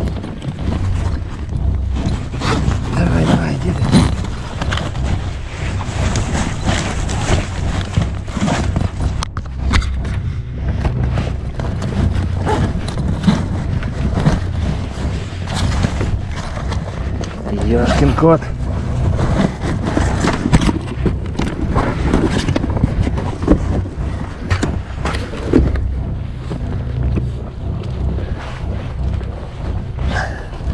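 A fabric gear bag being handled and rummaged through, with repeated rustling, clicks and knocks of straps and buckles over a steady low rumble.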